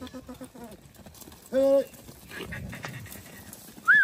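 Background music ends in the first half-second, then a single loud bleat from a flock of goats and sheep comes about one and a half seconds in. A short whistle, rising then falling, sounds just before the end.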